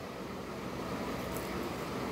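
Steady background hiss and low hum with no distinct events: room tone.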